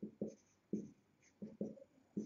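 Marker pen writing on a whiteboard: about six short, faint strokes as letters are drawn.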